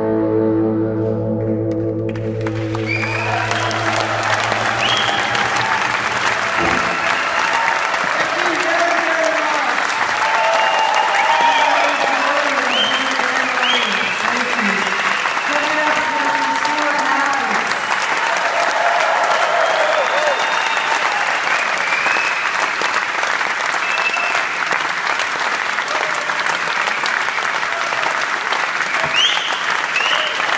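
The last chord of an electric guitar song rings out and fades in the first few seconds. Then a concert audience applauds and cheers, with a few whistles.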